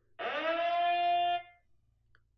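SENS8 outdoor security camera's siren alert tone 'Sound 2' previewed: one electronic tone that swoops up briefly at the start, holds steady for about a second, then stops abruptly.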